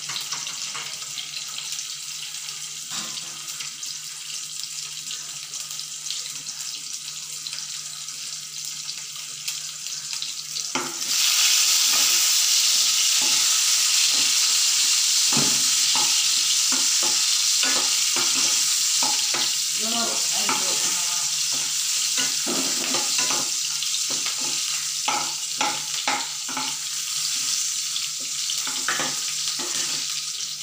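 Garlic and sliced onion sizzling in hot oil in a nonstick kadai. About eleven seconds in, more onion goes into the oil and the sizzle suddenly gets much louder. After that a ladle stirs, scraping and clicking against the pan.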